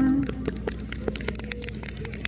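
The final held chord of a live band's acoustic guitars stops about a quarter second in, followed by scattered sharp clicks and knocks at irregular spacing.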